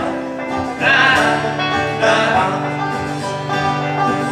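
Acoustic guitar and banjo playing a bluegrass-style folk tune together, with a sung vocal line over them.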